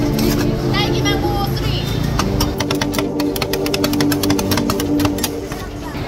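Metal spatulas scraping and clicking on a rolled-ice-cream cold plate, with a fast run of sharp taps lasting about three seconds from around two seconds in, over crowd chatter and background music.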